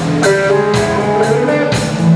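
Live blues-rock band playing: an electric guitar lick with bending notes over drum kit and bass, with no singing.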